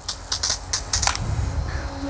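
Low-pressure rinse stream from a pressure washer's multi-setting nozzle tip spattering on concrete: a crackle of quick, irregular clicks over a faint steady hum.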